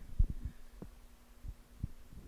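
Handling noise from a corded handheld microphone as it is passed from one person's hand to another's: a few low, dull thumps and bumps, the loudest just after the start.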